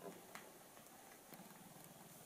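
Near silence with three faint handling clicks as a small paintbrush and a plastic cup are handled on a paper towel.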